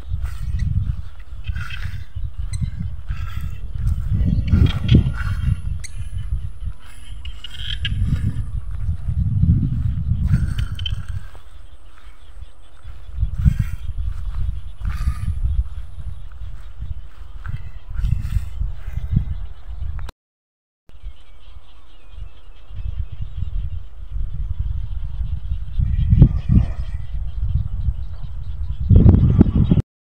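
Wind buffeting the phone's microphone, a heavy, gusting rumble that rises and falls, over faint higher calls in the background. The sound cuts out for about a second around two-thirds of the way through.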